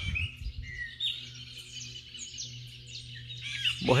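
Birds chirping in many short, high calls, over a faint steady low hum, with a few low thumps in the first half second.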